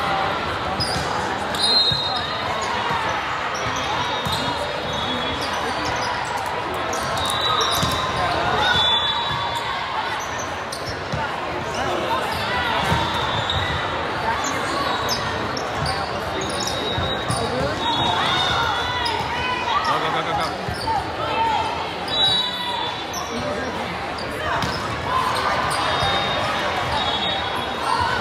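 Indoor volleyball gym din: many overlapping voices of players and spectators echo in a large hall. Sneakers give brief high squeaks on the hardwood floor, and balls are struck and bounce with frequent knocks.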